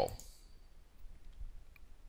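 A few faint clicks of a computer mouse against quiet room tone.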